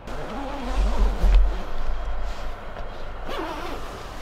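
Tent door fabric being handled and pulled open, with rustling and a low rumble that is strongest between about half a second and two seconds in.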